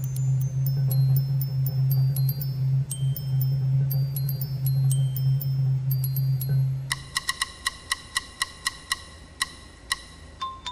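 A contrabass xylophone rolls a steady low note while a glockenspiel plays scattered high ringing notes above it. About seven seconds in, the low roll stops and the glockenspiel carries on alone with quick, evenly spaced single notes.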